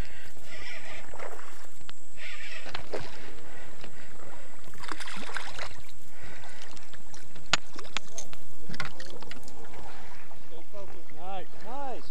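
Water splashing in short spells against a steady rush of wind on the microphone, as a hooked smallmouth bass is reeled to the boat and lifted out.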